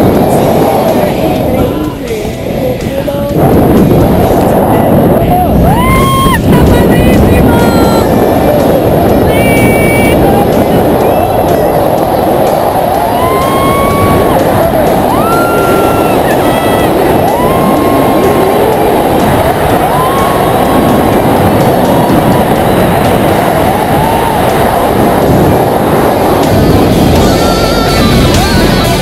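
Wind rushing over the microphone under an open parachute canopy, with a woman's rising-and-falling whoops of excitement every couple of seconds.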